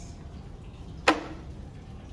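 A single sharp clack about a second in: a polar bear skull's jaw snapped shut, bone teeth striking together.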